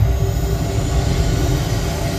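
Deep, steady rumbling sci-fi sound effect with faint music underneath, played over a car's radio inside the cabin.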